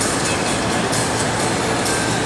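A loud, steady, noisy rumble with a low hum underneath, continuous with no pauses.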